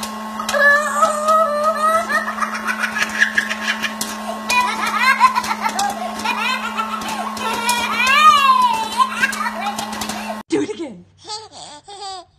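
A toddler's drawn-out evil laugh, rising and falling, over a popcorn machine running with a steady hum and kernels popping in quick clicks. Near the end, a baby laughing in short bursts.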